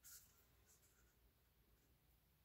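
Near silence, with a faint short scrape of a wooden stir stick against a paper cup right at the start and a few fainter scratches soon after.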